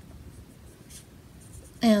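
Fingertips rubbing powder highlighter onto the skin of the cheekbone: a faint, scratchy rubbing, followed near the end by a short spoken word.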